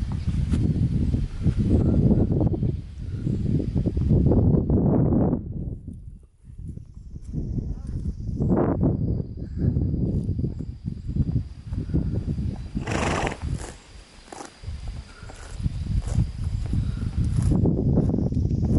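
A ridden horse walking on an asphalt road toward the microphone, its hoofbeats mixed with uneven low rumbling that swells and fades, dropping away briefly in the middle.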